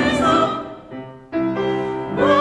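Mixed church choir singing sacred music. A phrase ends about half a second in and dies away in the room's reverberation, then a new sustained chord comes in sharply at about a second and a half.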